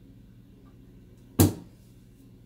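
A single sharp knock about one and a half seconds in, with a short ring-off: something set down hard on a granite kitchen countertop.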